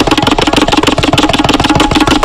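Tabla played solo: a fast, dense run of strokes ringing at one steady tuned pitch, with no deep bass-drum strokes in this stretch.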